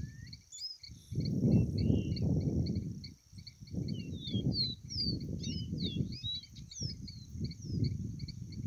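Short whistled song phrases of a caboclinho, a small Sporophila seedeater, come in sliding notes from about four to seven seconds in. Under them runs a steady, fast chirping pulse. Repeated bursts of low rumbling noise on the phone's microphone are the loudest sound.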